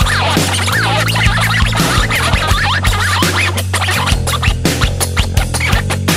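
Acoustic guitar playing a scratch-style solo, with wavering, sliding squeals that imitate a DJ's turntable scratch. Underneath are a steady drum-and-bass backing track with regular drum hits and low bass notes.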